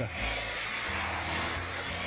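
Hot hand iron being pressed and slid over a pressing cloth on a hat's brim, a steady rubbing hiss, the final ironing of the brim to straighten it.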